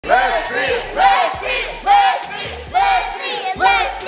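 A small group of people shouting together in unison, a rhythmic chant of loud shouts repeated about once a second.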